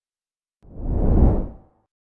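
Whoosh transition sound effect: a single swell of rushing noise that starts about half a second in, builds and fades away over about a second.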